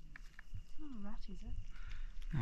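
A person's soft voice: a drawn-out, dipping-then-rising vocal sound about a second in, preceded by a couple of faint clicks.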